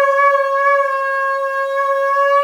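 Shofar blown in one long, steady held note.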